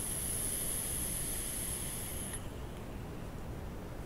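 Coil of a Velocity rebuildable dripping atomizer (a 0.12-ohm twisted 26-gauge coil fired at 42 watts) sizzling with a steady high hiss during a long draw, cutting off about two and a half seconds in.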